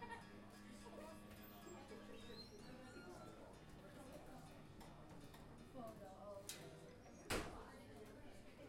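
Faint acoustic guitar string ringing as a sustained note for the first two seconds or so while it is being tuned, under low audience murmur. A single sharp knock comes near the end.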